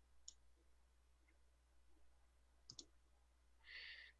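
Near silence with a few faint clicks: a single click about a third of a second in and a quick double click near the three-second mark.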